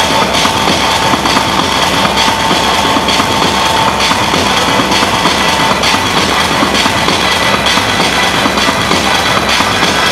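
Loud, dense techno played over a club sound system, a droning, machine-like texture with a held high tone that fades out around six seconds in.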